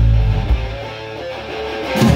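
Live rock band: the drums drop out and an electric guitar chord and bass note ring out and fade through a short break, with a single hit about half a second in. The drums come back in right at the end.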